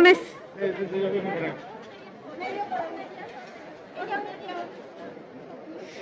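Crowd chatter: several people talking at once in short spells, quieter than a close voice.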